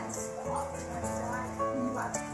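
Background music with steady notes, over which a dog whines briefly, about half a second in and again near the end.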